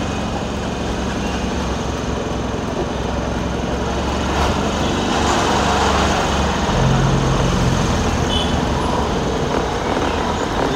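Road traffic heard from inside a moving vehicle: a steady engine hum and road noise, growing a little louder about halfway through.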